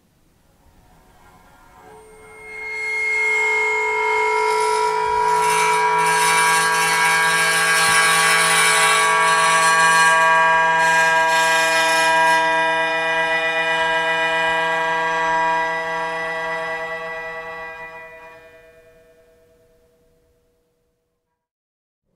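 A single string stopped by the edge of a flat bar, which also excites it at that same point so that both shortened lengths of string sound together. The result is a dense, sustained chord of many steady tones with bright overtones. It swells in over the first few seconds, holds, and fades away near the end.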